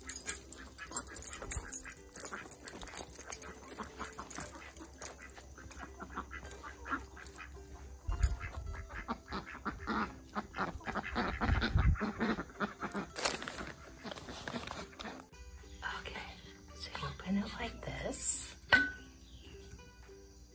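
Domestic ducks quacking, over rustling and clicks from a handheld phone being moved about, with a low rumble on the microphone about eight to twelve seconds in.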